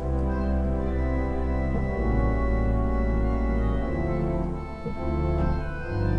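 Pipe organ playing an improvised jazz solo over sustained chords of a C major, A7, D minor, G7 turnaround, with a strong bass. The chords change about two seconds in, again around four and five seconds, and once more near the end.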